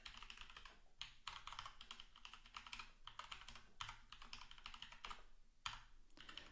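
Faint typing on a computer keyboard: a quick, steady run of key clicks, with a brief pause near the end.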